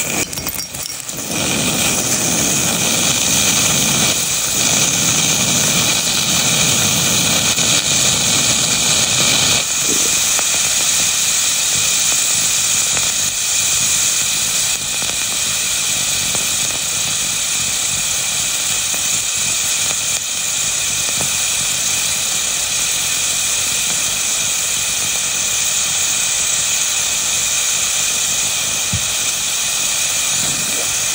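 Heated iron ball sizzling with a loud, steady hiss as water is poured onto it in a small glass and boils off as steam; the heat shock cracks the glass.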